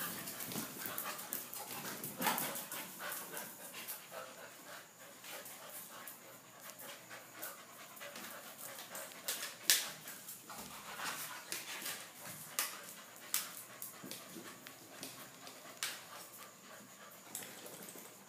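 Bullmastiff puppies and a small dog play-fighting: panting and scuffling, with scattered sharp clicks and knocks. The sound is faint throughout.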